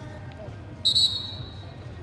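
A referee's whistle blown once, a sharp high blast about a second in that fades quickly, over the low hum of the hall: the match is being stopped on a submission.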